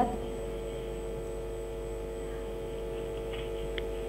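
Steady electrical hum on an open telephone line, several unchanging tones held together with no speech.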